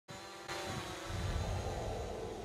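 Propellers of a DJI folding quadcopter drone, a steady whine of several tones together as it hovers low overhead and climbs.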